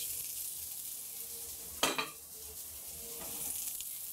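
Raw corn kernels and bacon lardons sizzling in olive oil in a hot sauté pan, with a short double knock just under two seconds in.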